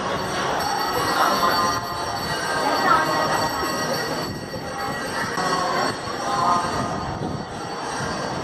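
Continuous metallic ringing and jangling over a dense, steady wash of sound, with several high tones held throughout.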